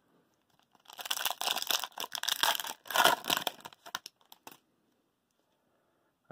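Foil wrapper of a hockey card pack being torn open and crinkled, starting about a second in and lasting about three seconds, with a few last crackles before it stops.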